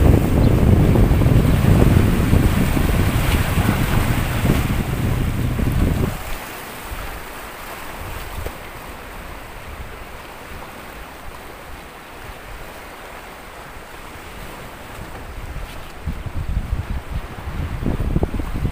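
Sea waves washing over a rocky breakwater, with wind buffeting the microphone loudly for about the first six seconds, then easing to a quieter steady rush of surf and wind.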